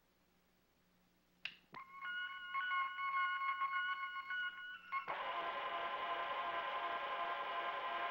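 Electronic control-console sound effects: two clicks, then steady high beeping tones that flicker on and off, giving way about five seconds in to a denser, steady electronic hum of several tones.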